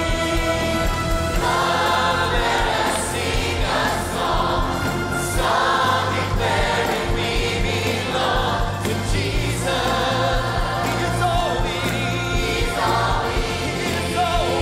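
A church choir of children, teens and adults, led by soloists at microphones, singing an upbeat gospel worship song over a band with a steady drum beat.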